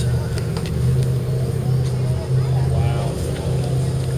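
A steady low hum of a running motor, with faint voices in the background.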